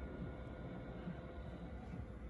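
Cooling fan of an Ameritron AL-811H linear amplifier running, a faint steady whir with a low steady hum beneath it.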